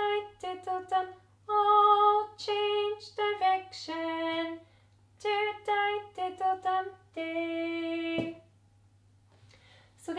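A woman singing an unaccompanied children's cup-song verse in short, rhythmic 'diddle-dum' syllables, ending on one long held note about eight seconds in. A brief knock at the end of that note is the plastic cups being turned over onto the floor.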